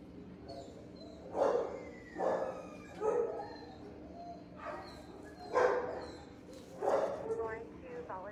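Dogs in nearby shelter kennels barking, about six separate barks spaced unevenly through a few seconds, over a steady low hum.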